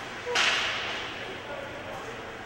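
Ice hockey play on the rink: a sudden sharp crack about a third of a second in, trailing into a hiss that fades over about a second.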